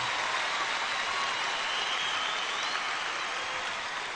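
A large concert audience applauding and cheering, steady throughout, with a few whistles over the clapping.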